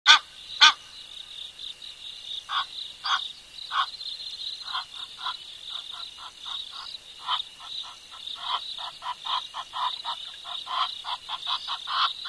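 A chorus of frogs: short croaking calls repeated over and over, coming about three to four a second in the second half, over a steady high-pitched trilling chorus. Two loud, sharp calls sound right at the start.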